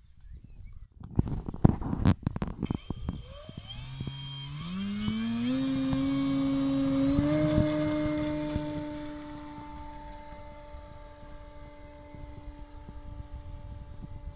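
Electric motor and propeller of a Ben Buckle Double Diamond model plane (electric conversion) throttling up for takeoff, its hum rising in pitch in steps, then holding steady at full power while fading as the plane climbs away. A few knocks sound in the first two seconds, before the motor starts.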